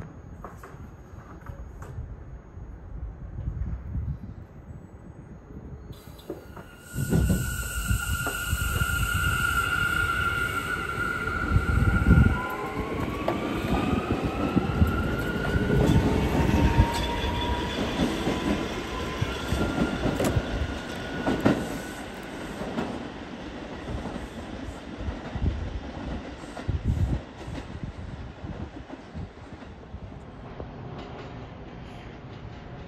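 R211A subway train starting to move out of the station. About seven seconds in, the rumble gets much louder and the steel wheels squeal on the rails in several high tones, some sliding in pitch, for about fifteen seconds, then the squeal dies away to rumbling and wheel clatter.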